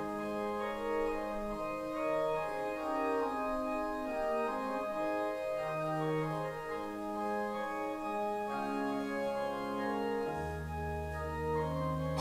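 Church organ playing a slow piece of held chords and changing notes, with a low bass note coming in near the end.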